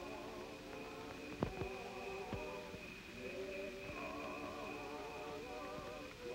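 A church choir singing a hymn in the distance, voices wavering together, with crickets chirping in one steady high trill above it. A couple of sharp clicks come between about one and a half and two and a half seconds in.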